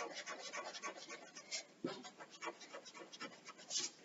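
Pencil scratching on paper in a run of short, irregular strokes, drawing lines.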